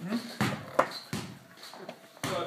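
A short voice sound at the start, then a few scattered short knocks.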